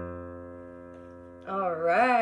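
The closing chord of a song played on an electric piano, struck just before and fading steadily. About a second and a half in, a woman's voice starts speaking.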